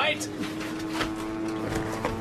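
Steady drone of a Second World War bomber's piston engines heard from inside the aircraft: an even hum holding a few steady pitches.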